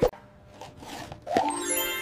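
A short, sharp cartoon plop sound effect at the start. About a second and a half in, a brief pitched musical tone dips slightly and then holds steady.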